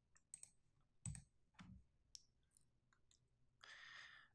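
Near silence with a few faint, scattered clicks, the loudest about a second in, and a short soft hiss near the end.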